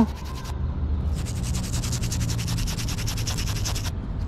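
A small stiff brush scrubbed rapidly back and forth over a crusted old coin, many quick strokes a second, pausing briefly about half a second in and then scrubbing steadily almost to the end.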